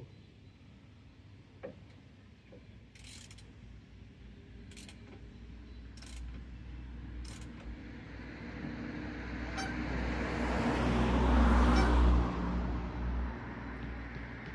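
A motor vehicle passing by: a low rumble with tyre hiss grows steadily louder over several seconds, peaks near the end and quickly fades. A few faint, separate clicks come earlier.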